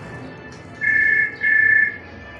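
A TV programme's soundtrack playing through the television's speakers: quiet music with two loud electronic beeps about a second in, each about half a second long and made of two steady high tones sounding together, a short gap apart.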